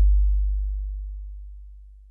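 A deep electronic sub-bass note ringing out at the end of an intro music sting, fading steadily away over about two seconds.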